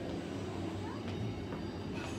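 Train-driving simulator in a subway cab playing a subway train's running sound: a steady low rumble, with a couple of faint clicks around the middle.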